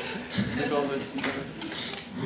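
Faint speech: low voices talking quietly, well below the on-mic talk.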